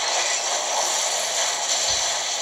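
Loud, steady rushing noise from a movie trailer's soundtrack, played through a TV's speakers.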